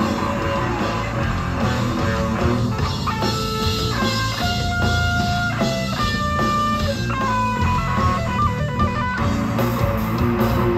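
Live death-grindcore band playing electric guitars and bass over drums. From about three seconds in to about nine seconds, a guitar lead line of held notes steps up and down above the rhythm.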